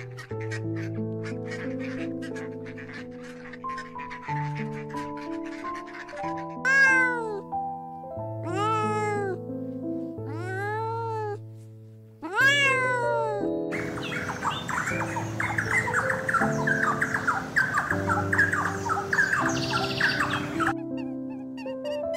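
A domestic cat meowing four times, about two seconds apart, over soft background music. A stretch of dense crackling noise follows near the end.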